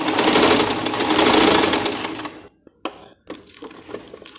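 Elgin JX-4000 domestic sewing machine running fast, stitching a decorative stitch as a test of its corrected threading, then stopping a little over two seconds in. A few scattered clicks follow.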